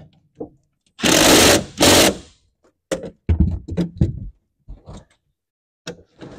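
Cordless drill-driver running the accelerator pedal mounting bolts back in under a VW Beetle's dash, in two short bursts about a second in, followed by quieter knocks.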